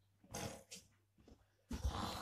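A small child growling with his voice, imitating a dinosaur roar: a short breathy growl early on, then a louder, longer growl near the end.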